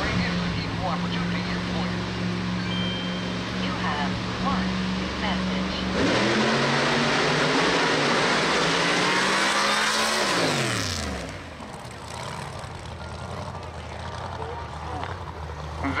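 1959 Cadillac Coupe DeVille drag car's engine running steadily at the starting line, then about six seconds in it launches and the engine note climbs hard under full throttle for about four seconds. Around ten seconds in the pitch drops sharply and the sound falls to a distant running note as the car nears the end of the strip.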